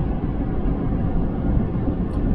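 Steady low road rumble inside the cab of a moving Ford F-250 Super Duty pickup, with no distinct knocks or changes.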